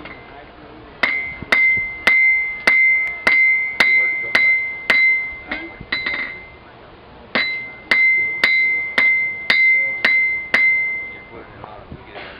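Hand hammer striking hot steel held in tongs on an anvil, forging a flint striker: two runs of blows about two a second, each with a ringing tone from the anvil, with a short pause between the runs.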